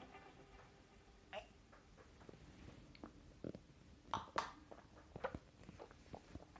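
Faint mouth sounds of a man sipping whisky and working it round his mouth: a handful of brief, scattered soft smacks.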